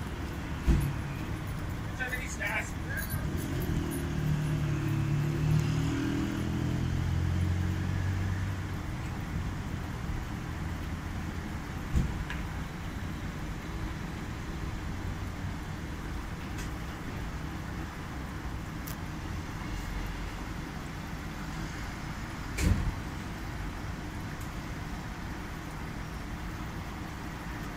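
Front-loading commercial washing machine tumbling a wet load in its wash cycle: a steady low drum-and-motor rumble, with a pitched motor hum swelling for a few seconds early on and a few single thuds as the load drops.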